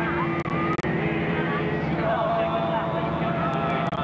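A group of teenage voices singing and talking over one another, over the steady rumble of a moving bus. The sound drops out sharply twice, about half a second in.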